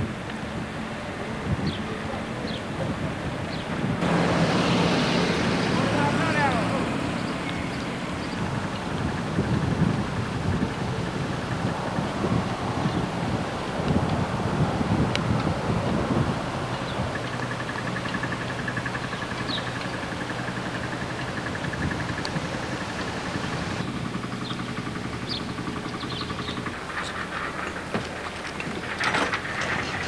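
Outdoor ambience picked up by a camcorder microphone: wind on the mic, a steady low engine hum and faint distant voices, a little louder a few seconds in.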